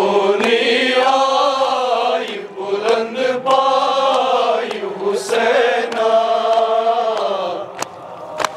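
Men's voices chanting a Shia noha (Muharram mourning lament) in a slow, sustained melody, with a few sharp slaps cutting through.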